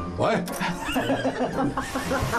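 A group of people laughing together, with a short spoken exclamation near the start, over background music.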